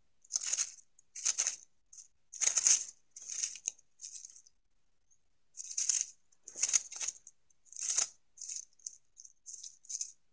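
A small mammal digging through dry leaf litter at a buried acorn cache: a quick series of short rustling, crackling bursts, with a pause of about a second and a half near the middle.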